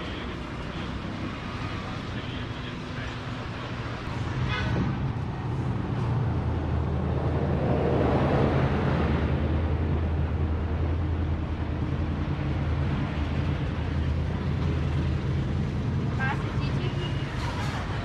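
Street traffic passing close by: a vehicle's engine hum grows louder, peaks about eight seconds in as it goes past, and eases off, over a steady wash of road noise.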